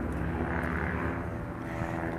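A steady low mechanical hum made of several held tones, with no clear start or stop.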